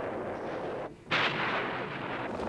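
Heavy gunfire on old archival film sound: steady noisy background, a brief dropout, then a single loud shot or blast about a second in that dies away over about a second.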